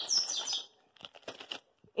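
A small bird chirping: a quick run of short, high whistled notes that climb in pitch, ending about half a second in. A few soft crinkles of plastic food packaging being handled follow.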